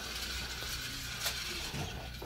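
Toy upright vacuum cleaner running as it is pushed over carpet: a steady hissing whirr, with a single click a little past a second in.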